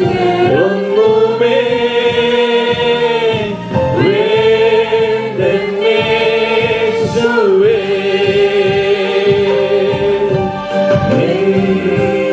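A congregation of women singing a worship song together in unison, in long held phrases.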